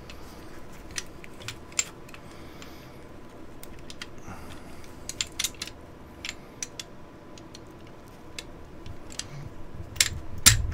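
Scattered light metal clicks and taps from an M1A rifle's operating rod being worked against the steel receiver while its lug is lined up with the disassembly notch in the rail. A few sharper clicks come about a second in and about five seconds in.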